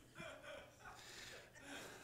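Near silence: faint room tone with a few soft, short breaths from a man, the strongest about a quarter of a second in.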